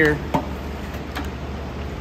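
A single short knock about a third of a second in, then a steady low hum.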